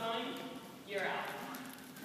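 Jump ropes slapping a wooden gym floor as they are swung, with a voice talking over them.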